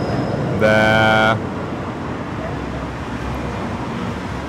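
Steady city street traffic noise, with a tram passing.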